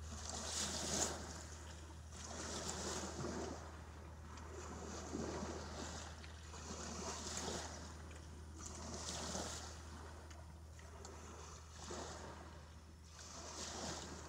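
Small waves washing in against a river bank in soft swells about every two seconds, over a steady low hum.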